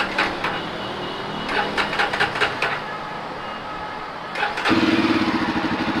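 Jawa Perak's 334 cc single-cylinder engine being started on the electric starter with the clutch pulled in. It runs quietly for about four seconds, then catches with a little throttle and settles into a louder, evenly pulsing idle through its cut-down twin exhausts.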